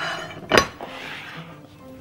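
A ceramic serving plate is set down on the counter with a sharp clink about half a second in, followed by a brief soft scrape. Soft background music plays underneath.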